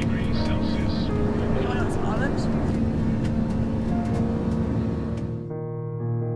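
Airliner cabin noise in flight: a steady engine drone with a constant hum, faint voices and light clicks from packets being handled. About five and a half seconds in, it cuts abruptly to music.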